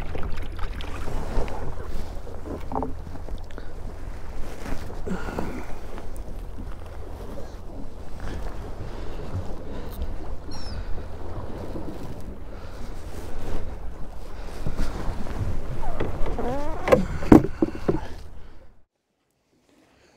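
Steady low wind rumble on the microphone and choppy sea water slapping against a small boat's hull, with a brief pitched sound near the end; it all cuts off suddenly shortly before the end.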